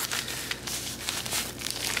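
Plastic packaging crinkling as a plastic-wrapped pack of prop banknotes is drawn out of a padded bubble mailer: a dense run of small crackles.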